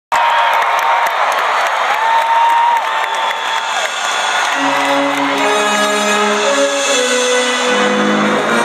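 Arena crowd cheering and whistling; about halfway through, long held chords of music begin over the crowd noise.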